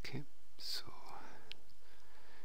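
A man's breathy, whispered vocal sounds, with one sharp click about one and a half seconds in.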